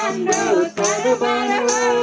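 Several young women singing a Christian hymn (bhajan) together into a microphone, holding long sustained notes.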